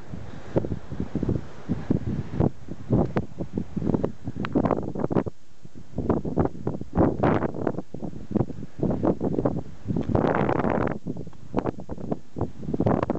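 Strong, gusty wind buffeting a windsock-covered microphone in irregular low blasts, with a longer, fuller gust about ten seconds in.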